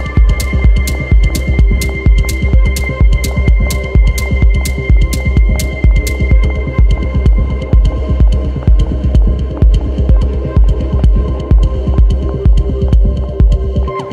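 Techno track with a steady, heavy kick drum at about two beats a second under sustained synth tones. A crisp high tick with each beat fades out about six seconds in.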